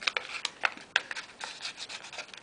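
Origami paper crackling and rustling in the fingers as a flap is opened and its crease pushed inward with the thumb: a run of short, irregular crackles.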